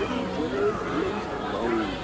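Indistinct voices talking, with music underneath.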